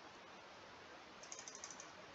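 A quick run of faint computer keyboard keystrokes starting a little past a second in, backspacing text out of a search box, over faint room hiss.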